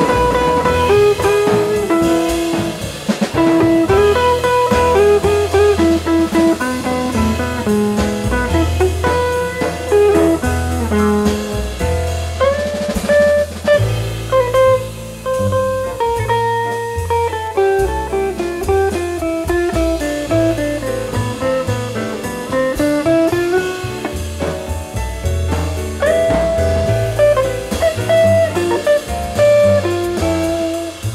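Live jazz quartet playing: a jazz guitar line moves over an upright double bass line and a drum kit, the drummer keeping time on the cymbals with sticks.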